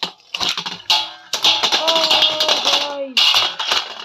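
Beyblade spinning tops, Slash Valkyrie among them, clashing and skittering in a steel plate: rapid metallic clicks and clattering against each other and the plate's metal.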